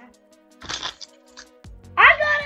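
Background music with steady held tones and a faint regular tick, over which a stack of trading cards is handled, giving a brief papery swish a little over half a second in and a smaller one near the end.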